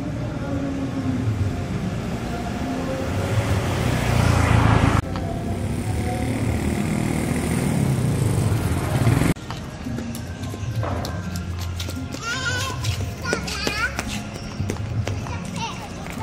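Ambient location sound of indistinct voices and background noise, with a noise swell that builds to about four seconds in. The sound changes abruptly twice, about five and nine seconds in. A run of high chirping sounds comes about twelve to fourteen seconds in.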